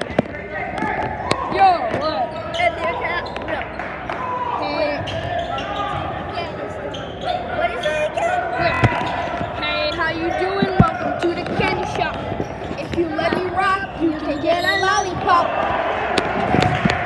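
Basketball game in a gym: a ball bouncing on the hardwood court amid the crowd's voices and chatter, with a few sharper knocks.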